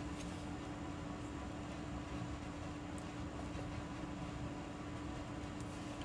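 Steady room tone: a constant low hum with an even hiss beneath it, and one faint tick about halfway through.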